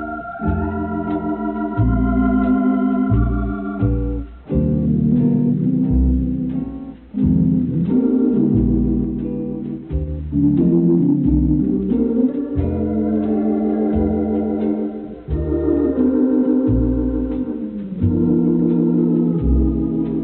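Organ playing an instrumental passage: held chords over a bass line that steps from note to note, with a dull, narrow sound from an old radio recording.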